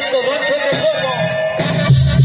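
Mexican banda (brass band) music playing: a wavering melody line, with the low bass coming back in near the end.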